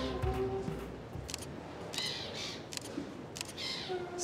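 Background music fading out in the first second, then faint outdoor ambience with a few sharp camera shutter clicks and faint bird calls.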